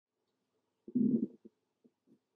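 A brief low murmur from a person's voice about a second in, followed by a couple of faint ticks.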